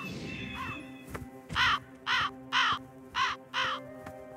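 A cartoon vulture cawing: five short, harsh calls about half a second apart, after a brief rush of noise at the start. Background music plays steadily underneath.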